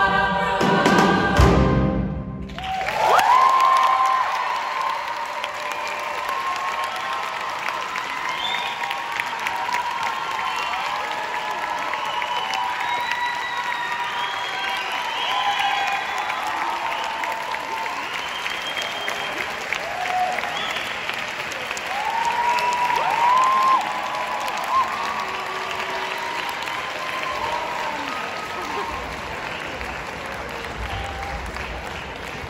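A choir with piano and band accompaniment ends a song with a loud final chord that stops abruptly about two seconds in. Audience applause with cheers and whoops follows and continues to the end.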